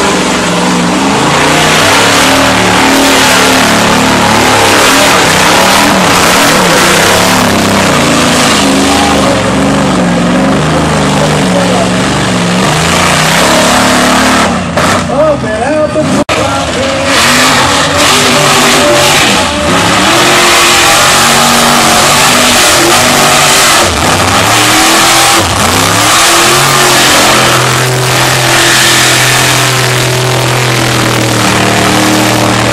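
Lifted mud-bog pickup trucks' big engines revving hard under load as they churn through a mud trench. The engine pitch steps and surges up and down, with a short break about halfway through before the engine sound returns.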